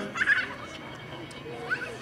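A pause in a man's speech into a microphone, with a low background hum of the outdoor gathering. A brief high-pitched voice comes about a quarter second in.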